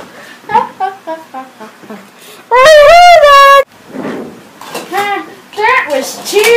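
A child's voice doing toy-character sounds: short high-pitched babbling syllables, then a very loud held cry about a second long, rising and falling in pitch, starting about two and a half seconds in, followed by more short voiced sounds.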